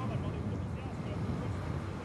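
Steady low rumble of a motor vehicle engine mixed with wind noise, the ambient track of a camera travelling alongside the riders.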